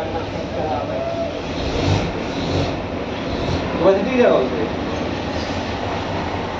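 A steady low rumble runs throughout, with a few faint scraping strokes as a hand rasp roughens a rubber inner tube for a puncture patch. A man's voice comes in briefly about four seconds in.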